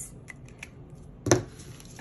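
A felt-tip marker being handled and put down on a table: a few faint taps, then one sharp plastic click a little past halfway.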